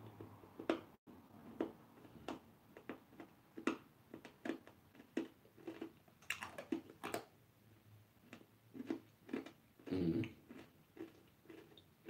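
Faint mouth sounds of a person chewing: irregular wet clicks and smacks, one to a few each second, with a brief hum about ten seconds in.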